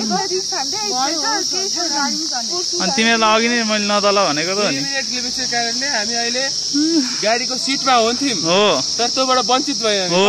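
A steady, high-pitched insect drone, unbroken throughout, with people talking over it.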